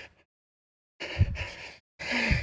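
A man's breathy exhale about a second in, two short puffs of air into a close headset microphone.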